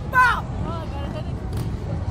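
A rider's short, high-pitched laugh just after the start, then fainter voice sounds, over a steady low rumble of wind buffeting the microphone as the Slingshot capsule swings.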